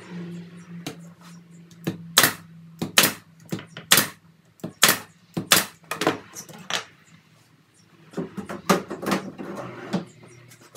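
A nail gun firing nails into wood as a drawer front is fastened on: a series of sharp shots, each under a second apart, then a short lull and two more shots near the end. A low steady hum runs underneath.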